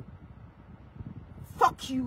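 A woman's voice pausing between phrases over a low, steady rumble, then two short, clipped vocal sounds near the end.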